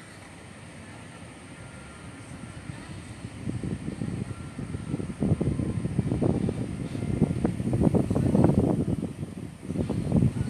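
Wind buffeting the microphone in gusts, starting a few seconds in and building to its strongest near the end.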